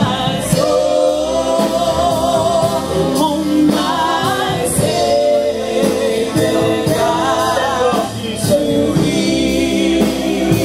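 Gospel worship song sung by a group of men's and women's voices, with long held notes, over steady instrumental backing.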